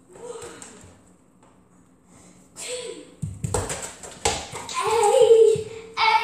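A child's wordless calls and sing-song shouting, the loudest a long held call in the second half, with thuds and knocks from about three seconds in.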